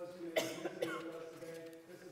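A person coughs twice in quick succession, once about half a second in and again just under a second in, over soft, sustained musical notes.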